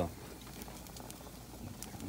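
Deer steaks and tenderloin sizzling on a gas grill: a faint, steady hiss with a few scattered soft crackles.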